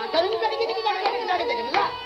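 Live tabla solo: hand strokes on the tabla pair over a steady pitched accompaniment line, with pitch bends and sharp strikes.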